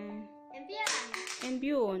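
Background music fades out. After a brief lull, about half a second of hand clapping mixed with voices follows, then a voice starts speaking near the end.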